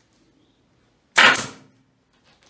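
A staple gun fires once about a second in, a single loud, sharp snap that fades quickly with a brief ring as it drives a staple through tarpaulin into a wooden frame.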